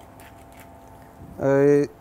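A faint steady hum of the room, then near the end a man's voice makes one drawn-out hesitation sound, a held "eee" before he speaks again.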